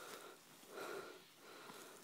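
Two faint breaths, less than a second apart.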